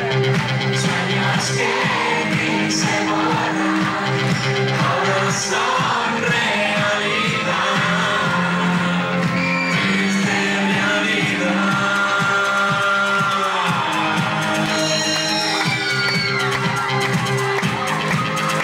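Synth-pop dance song with sung vocals over synthesizers, heard loud from within a club crowd, with the crowd shouting and whooping along.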